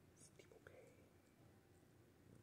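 Near silence, with a faint whisper and small mouth sounds in the first second.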